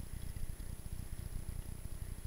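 Low, uneven rumble of wind and trail vibration on a bike-mounted camera's microphone while riding a dirt singletrack.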